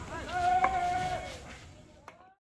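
One long, drawn-out, voice-like call, loud and held for about a second, then fading away.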